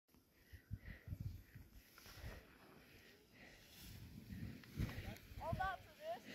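Faint, uneven low rumbles of wind buffeting the microphone, with a distant high-pitched voice speaking briefly near the end.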